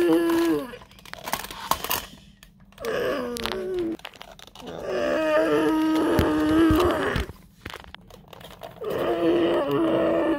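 A person voicing a toy dinosaur: a series of long, drawn-out moaning growls, about four of them with short pauses between. Light handling clicks come from the toy between the calls.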